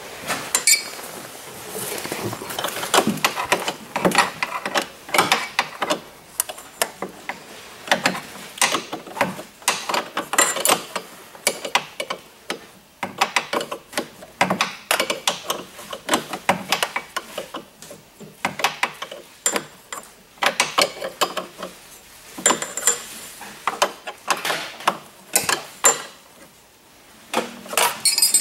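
Metal hand tools working on an Arctic Cat snowmobile's steering post and linkage: irregular metal clicks, clinks and ratchet-like clicking throughout.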